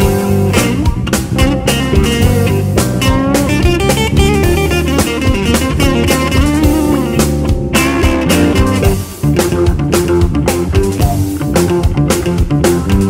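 Live blues-rock band playing an instrumental passage: electric guitar over a steady drum beat and bass, with organ from the keyboards.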